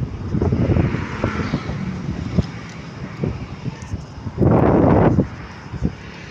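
Roadside traffic rumble from passing motorbikes and cars, mixed with wind buffeting the phone's microphone. A louder rush of noise comes about four and a half seconds in and lasts under a second.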